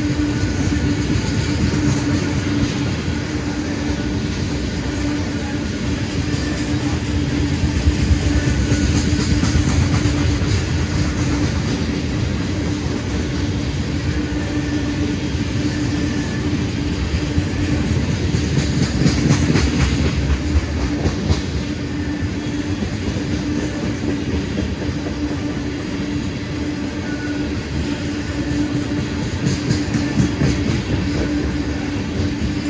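Loaded ethanol tank cars of a long freight train rolling steadily past, wheels clicking over the rails, with a steady hum underneath.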